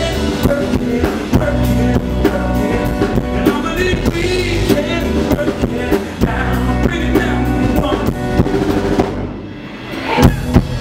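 Live band playing an instrumental passage, with the drum kit's bass drum and snare driving the beat under melodic lines. About nine seconds in the band drops to a brief lull, and the drums come back in right at the end.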